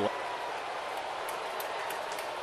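Steady crowd noise in a baseball stadium, with a few faint clicks.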